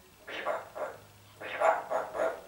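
Blue-fronted amazon parrot calling in a quick series of short, speech-like squawks, bunched in two groups.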